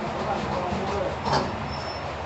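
A spoon clinks sharply against a steel plate about a second and a half in, leaving a brief high metallic ring. Behind it is a steady background of voices and traffic hum.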